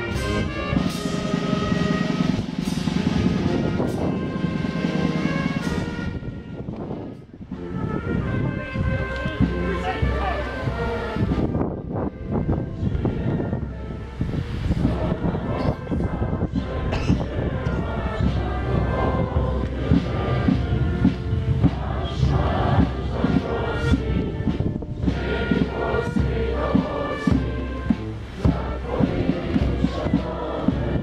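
Brass band playing sustained, slow music, with a brief lull about a quarter of the way through.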